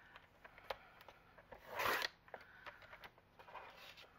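Sliding-blade paper trimmer cutting the edge off a sheet of cardstock-weight paper: small clicks and paper rustles, then one short swish of the cut about two seconds in.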